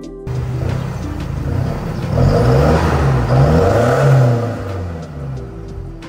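Isuzu D-Max pickup's four-cylinder turbodiesel revved several times through an HKS aftermarket exhaust with a carbon-fibre tip. The pitch rises and falls with each blip, loudest in the middle, and drops back toward idle near the end.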